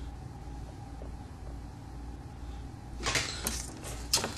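Steady low hum for about three seconds, then a quick flurry of sharp clicks and rustles from hands working the fly in a fly-tying vise as a stick-on eye is put on.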